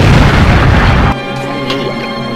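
A loud, deep boom sound effect that stops sharply about a second in, with background music carrying on underneath.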